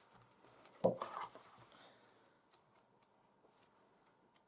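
Paper rustling as pages of a book are leafed through, with a soft thump about a second in and faint scattered clicks afterwards.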